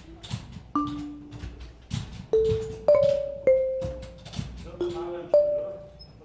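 Robotic marimba on the Quartet kinetic instrument, struck by mechanical mallets: about six single notes at different pitches, each ringing for up to a second, with short mechanical clicks and knocks between them.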